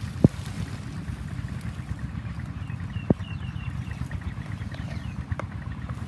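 Low, steady wind rumble on the microphone, with two sharp clicks and a short string of high chirps near the middle.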